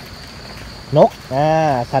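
A steady, high-pitched insect drone carries on throughout. About a second in, a man starts speaking in Thai over it.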